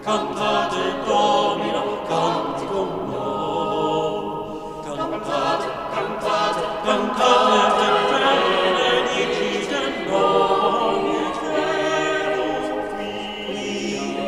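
A small church choir singing in several parts, the voices ringing in a large stone church.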